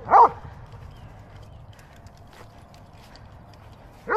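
A dog barks once, a single short bark a fraction of a second in, followed by faint outdoor background noise.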